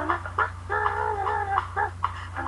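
A woman's voice making funny, chicken-like vocal noises: a string of short, wavering pitched calls.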